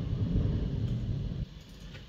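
A low rumble with a few faint computer keyboard keystrokes as code is typed. The rumble drops away sharply about a second and a half in.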